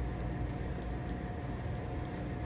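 Steady low background hum with a faint steady whine above it.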